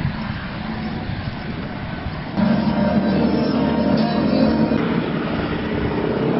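Outdoor street noise with a motor vehicle engine running, growing louder about two and a half seconds in.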